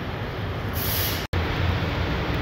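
Steady low rumble and hiss of workshop background noise, with a brief hiss a little under a second in; the sound drops out completely for a split second where the recording cuts.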